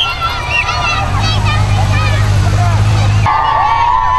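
Police motorcycle engine running close by with a steady low hum under a crowd of children cheering and shouting. The engine hum starts about a second in and cuts off abruptly near the end.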